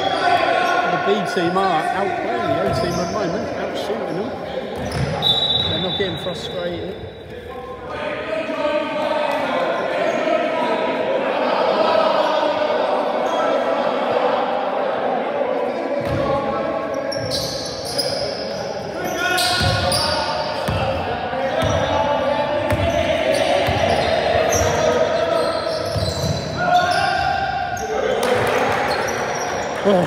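Basketball being dribbled on a wooden sports-hall floor, the bounces echoing in the large hall and coming clearest in the second half, under indistinct voices of players on court.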